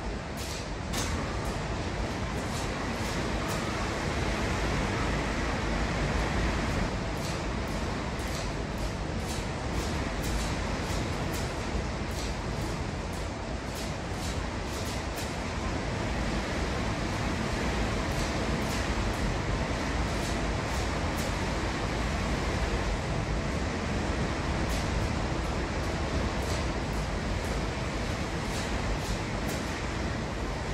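Hurricane wind howling steadily against a house, with frequent sharp knocks and rattles from the building being buffeted.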